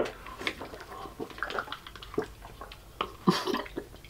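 People slurping and gulping mandarin oranges in syrup straight from plastic fruit cups: wet sucking, swallowing and small liquid clicks, with a brief louder noise a little past three seconds in.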